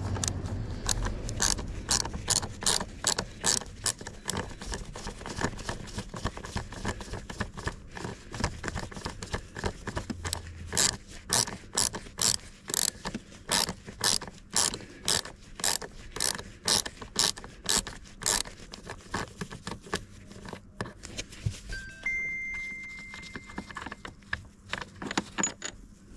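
Ratchet wrench clicking steadily, about three clicks a second, as a thread-locked seat mounting bolt is wound out; the clicking stops about two-thirds of the way through. A short steady tone sounds near the end.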